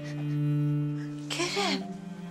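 Background score of a low, held bowed-string note that swells and fades. A child's crying sob breaks in about one and a half seconds in.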